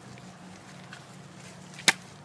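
A G10 knife striking a plastic-wrapped slab of pork in one quick slash, a single short, sharp hit near the end.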